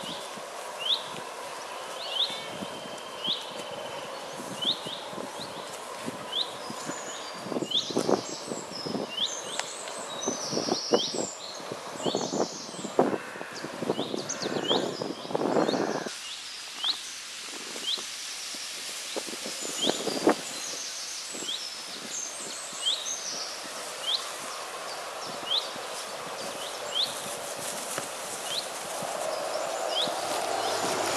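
Woodland birdsong over a steady rush of running water: one bird gives a short, clipped chirp about once a second throughout, while other birds sing in stretches in the middle and again later on. Scattered rustling comes through in the middle.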